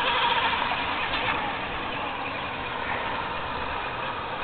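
Micro RC outrigger hydroplane's 10-gram electric outrunner motor and small metal prop whining at high revs as the boat runs across the water; the wavering whine is strongest in the first second or so, then fades as the boat moves away.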